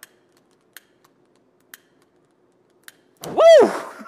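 Four or five faint clicks about a second apart from a stick lighter's trigger being pulled, trying to light fuel-filled soap bubbles. Near the end a loud shout of "Woo!" drowns them out.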